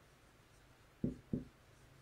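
Felt-tip marker writing on a whiteboard, faint, with two soft low knocks about a second in, a third of a second apart.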